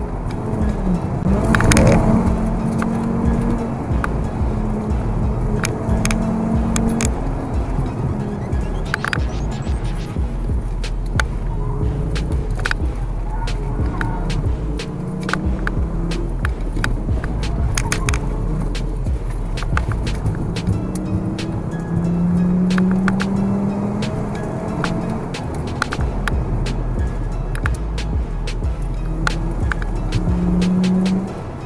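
Volkswagen Golf Mk6's 2.5-litre five-cylinder engine heard from inside the cabin, its note rising and falling with the throttle over steady road rumble. Scattered sharp clicks come through throughout.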